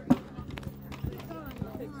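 A horse lands on arena sand after a jump with one sharp thud, then canters on with hoofbeats about twice a second.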